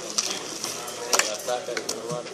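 Scattered small clicks and knocks over faint murmured voices, with one sharper click a little past the middle.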